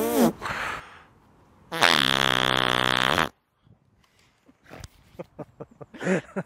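A raspberry blown with the lips against the skin of a neck: one loud, buzzing, fart-like blow about a second and a half long, falling slightly in pitch. A few faint clicks follow near the end.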